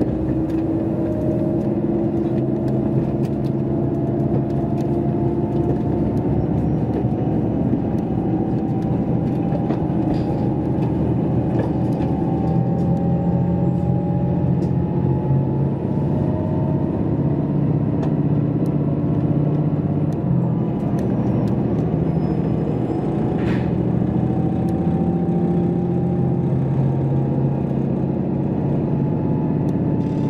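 Steady running noise inside a JR Hokkaido KiHa 281 series diesel express railcar: the diesel engine's drone and the rumble of the wheels on the rails, with engine tones that climb slowly in pitch several times.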